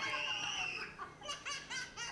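A young girl's long, high-pitched cry, followed by a run of short, quick high vocal sounds, as she reacts to learning the baby is a brother and not the sister she wanted.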